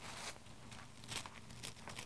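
Faint rustling and crinkling of tissue paper sheets being handled.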